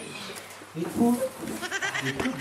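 A grown man's voice whimpering and crying like a small child, with a quavering, bleat-like wobble in pitch. It starts about three-quarters of a second in and breaks into quick sobbing catches near the end.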